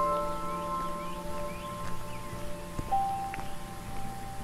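Calm background music of slow, bell-like notes that ring on and overlap. A new note sounds just before the start, and a higher one enters about three seconds in.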